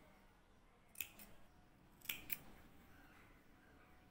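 Faint, quick rasps of a needle and thread being drawn through cotton fabric in hand sewing: a pair of short strokes about a second in and another pair about two seconds in.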